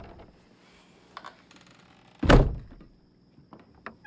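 A single heavy thud on a wooden closet door about two seconds in, with a few faint clicks before it and near the end.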